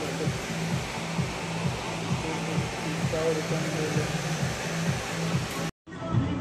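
A steady, loud rushing noise like blowing air, with music playing faintly underneath. The sound cuts out abruptly for a moment near the end.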